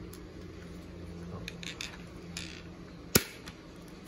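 Plastic snap mouse trap handled in the hands: a few light plastic clicks and rattles, then one sharp plastic snap a little after three seconds in.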